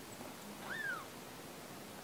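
A kitten gives one brief, faint, high mew that rises and falls in pitch, a protest at having its eye wiped with wet cotton.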